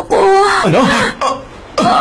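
A person's voice: a short utterance lasting about a second, then a brief one falling in pitch near the end.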